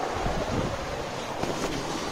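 Camera being picked up and handled: a steady rustling hiss with a few faint bumps against its microphone.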